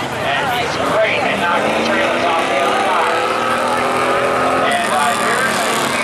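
Derby-style race car engines revving up on the track, rising steadily in pitch for a few seconds, with voices of nearby spectators over them.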